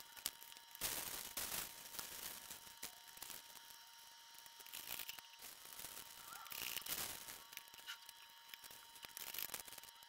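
Thin plastic wrappers crinkling and rustling as they are pushed by hand into the neck of a plastic bottle, packing it into an eco-brick, in irregular bursts, the loudest about a second in and near seven seconds.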